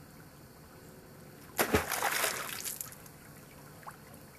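A wooden spear stabbed into shallow creek water about one and a half seconds in: a sudden splash that dies away over about a second.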